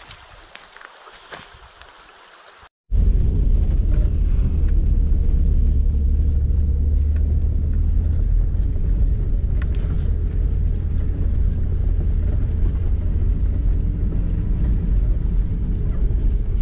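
Faint outdoor background with a few light clicks, then, after a cut about three seconds in, the loud steady low rumble of a car driving, heard from inside the cabin.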